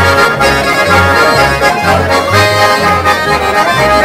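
Swiss Ländler trio playing a schottisch: a chromatic button accordion and a Schwyzerörgeli play the tune together over a plucked double bass, with bass notes about twice a second.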